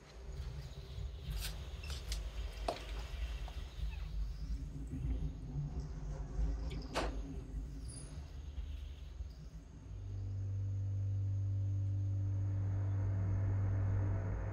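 Dark horror-film underscore: a low, uneven rumble with a few faint clicks over it, giving way about ten seconds in to a steady low drone.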